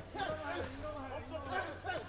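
Faint voices calling out at ringside, with a steady low hum underneath.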